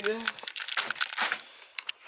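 Clothing rustling and crinkling against a handheld phone's microphone: a quick run of crackles through the first second and a half, fading, then a couple of faint clicks near the end.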